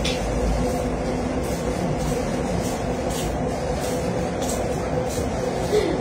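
Steady background hum and hiss with a faint constant tone, and a few faint scratchy ticks scattered through it.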